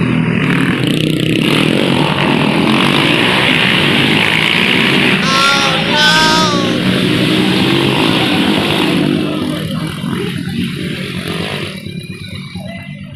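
Small motorcycle engines running loudly and steadily, with two short shouts about five and six seconds in, then easing off over the last few seconds.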